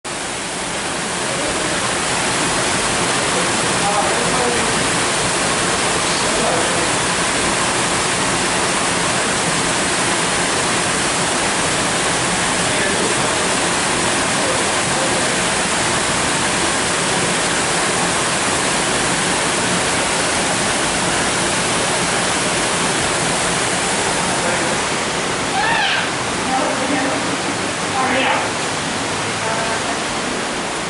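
Waterfall rushing steadily over rocks at the top of a large artificial garden cascade, a loud, even roar of falling water. Faint voices come through it now and then, with two short louder calls near the end.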